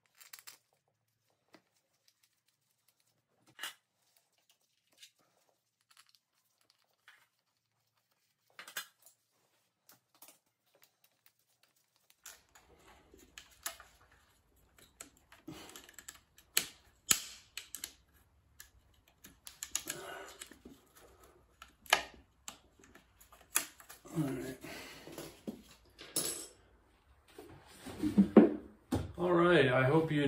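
Hand tools and bolts clicking and tapping against a dirt bike's clutch cover and cover guard as they are fitted and tightened. Scattered faint clicks at first, busier and louder from about twelve seconds in.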